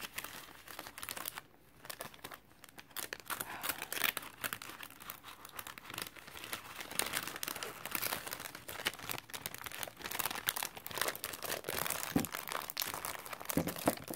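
Clear plastic cellophane packaging crinkling as it is handled, with many quick, irregular crackles.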